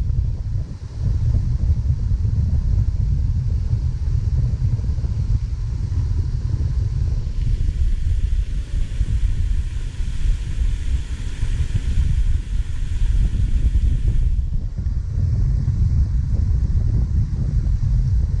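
Wind buffeting the microphone: a steady, gusting low rumble.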